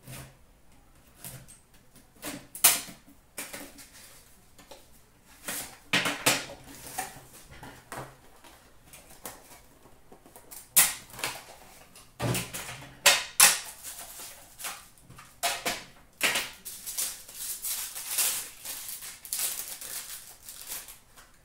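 A cardboard card box and a metal card tin handled on a glass counter: irregular clicks, knocks and taps. Near the end comes a denser run of crinkling as a foil-wrapped pack is handled.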